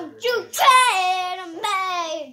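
A young child singing unaccompanied, with long held notes that step down in pitch.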